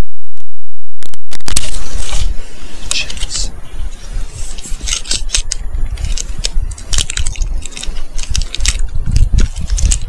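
Camping gear being handled and unpacked: a quick, irregular run of clicks, rattles and scrapes over a low rumble on the microphone. It opens with about a second and a half of overloaded, distorted signal.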